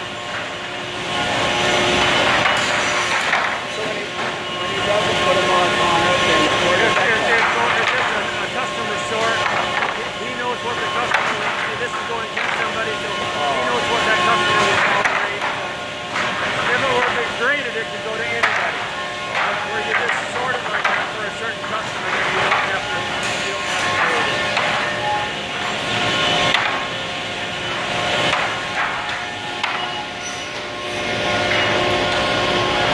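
Mill machinery running with a steady hum under indistinct voices talking.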